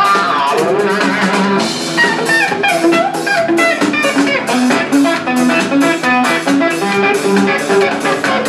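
Electric guitar played live through a stage amplifier, picking a melodic line of single notes that move up and down several times a second.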